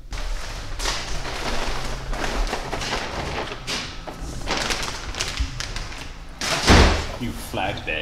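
Cloth rustling and things being handled on a counter, with scattered knocks and one heavy thud about two-thirds of the way through.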